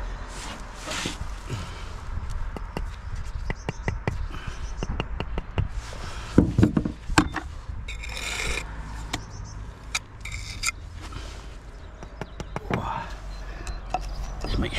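Bricklaying hand work: a steel trowel scraping and tapping on wet mortar and brick as a brick is set and its joints struck off, with scattered light taps and clicks and two short rasping scrapes about eight and ten seconds in.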